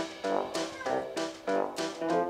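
Background keyboard music with evenly spaced notes, and a Bengal mix cat meowing once about half a second in while it waits at a door.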